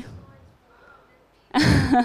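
A woman bursts out laughing near the end, loud and breathy, after a second and a half of near quiet.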